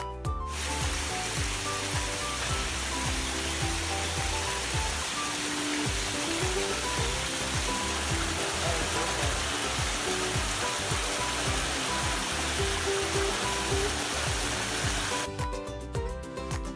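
Water from a small forest stream rushing steadily over a low stone weir, with background music playing throughout. The water starts suddenly about half a second in and cuts off suddenly near the end.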